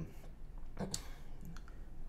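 A pause in a man's talk: a couple of faint clicks about a second in, over a low steady hum.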